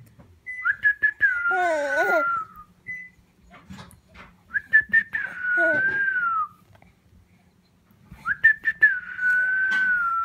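A person whistling a held note three times, each about two seconds long, starting with a small rise and then sinking slightly. A baby coos alongside the first two whistles.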